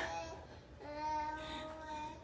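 A toddler's voice singing a long, steady held note, starting about a second in, after a short breathy burst of sound at the very start.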